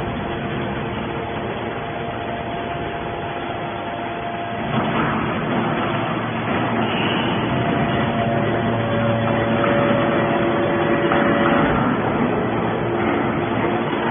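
Hydraulic scrap metal baler's power unit running: a steady mechanical drone with several held tones. About five seconds in it grows louder and the tones change pitch.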